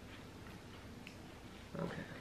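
Faint chewing and mouth sounds of people eating crisp-edged baked cookies, with a brief hummed "mm" near the end.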